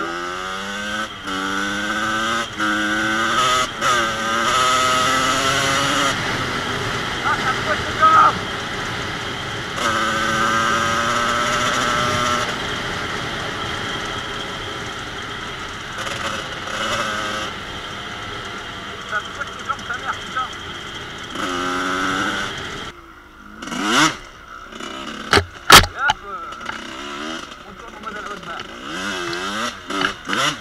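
1986 Kawasaki KX125's two-stroke single-cylinder engine under way, revving up and dropping back in steps as it shifts through the gears, then holding a steadier pitch. Near the end the engine note falls away and a few sharp knocks are heard.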